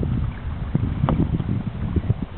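Wind buffeting the microphone aboard a moving boat on a river: a low, uneven rumble with irregular gusts.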